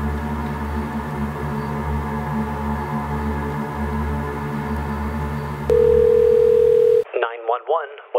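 A low, steady ambient music drone, then a single steady telephone ringback tone of about a second, the loudest sound. The tone and the music then cut off together and a thin voice, heard as if through a telephone line, begins: an emergency operator answering.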